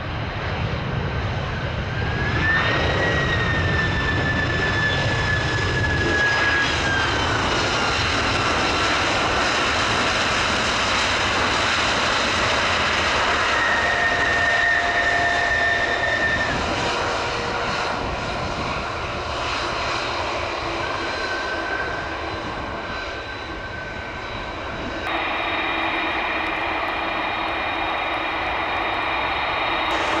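Airbus A300-600ST Beluga's GE CF6-80C2 turbofans running in reverse thrust on the landing roll on a wet runway: a steady jet noise with whining tones that slowly fall in pitch. About 25 seconds in the sound changes abruptly to a steadier engine whine as the aircraft slows to a taxi.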